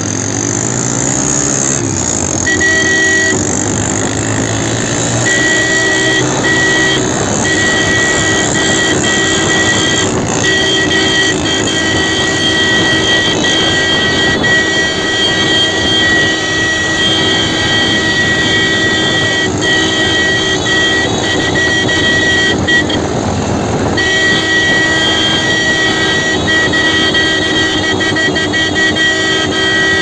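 Motorcycle engine running, rising in pitch as it speeds up at the start, under a vehicle horn held almost without stop, with a few short breaks and one clear gap about 23 seconds in.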